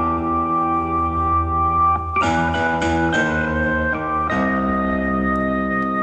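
Solo keyboard playing slow held chords over a sustained bass, with a new chord struck about two, three and four seconds in.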